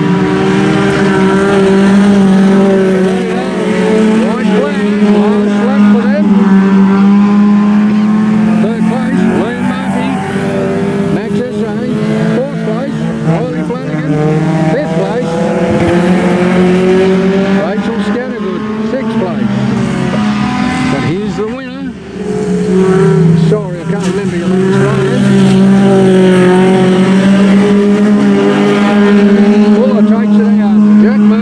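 Engines of several small sedan race cars running hard around a dirt speedway oval, their pitch climbing and falling as they lap, with a brief lull about 22 seconds in.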